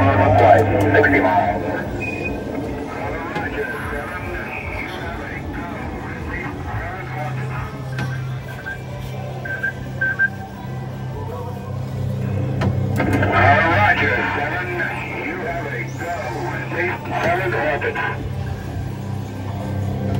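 R.G. Mitchell NASA Space Rocket coin-operated kiddie ride in its ride cycle: its speaker plays recorded Apollo mission radio voices and effects over a low, steady hum from the ride.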